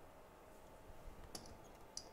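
Near silence: room tone with a faint steady hum, and two small clicks about half a second apart late on.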